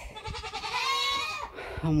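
A Nigerian Dwarf goat bleating once, a single long call lasting about a second.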